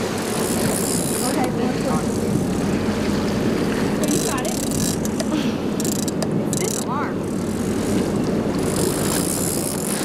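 Sportfishing boat's engines running steadily under a wash of water and wind, with several short bursts of hiss and a brief call about seven seconds in.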